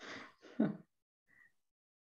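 A person's short, breathy laugh: two quick exhalations in the first second.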